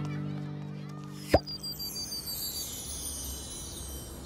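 The last held chord of a cartoon theme tune fading out. About a second and a half in comes a cartoon sound effect: a sharp pop with a quick upward swoop, then a high, glittering chime that slides downward, a magic-style transition sting.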